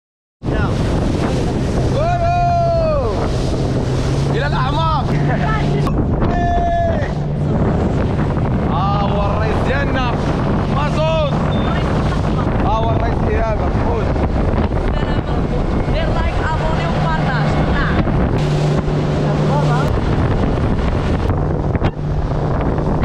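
Outboard motor driving a small boat at speed, a steady low hum under loud wind on the microphone and rushing water from the hull. Voices call out several times over it.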